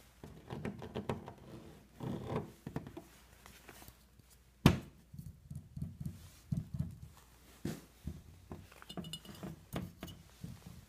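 Objects handled close to the microphone on a hard surface: a string of soft taps, knocks and rubs with one sharp knock about halfway through, a baseball turned in the hand, and glass jars clinking with a brief ring near the end.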